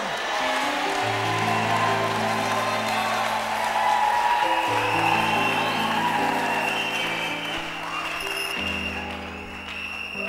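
A congregation applauding over sustained held chords from an instrument, the chords changing every few seconds. The applause dies down near the end, leaving the chords.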